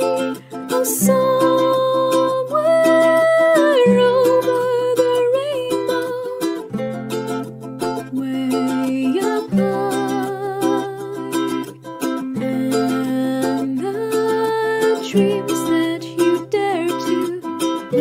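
Ukulele accompaniment with a solo voice singing the melody over it, the chords changing every few seconds.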